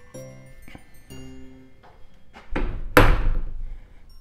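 Louvered closet door swinging shut, with a low rumble as it moves and a single solid thunk about three seconds in. Light background music plays underneath.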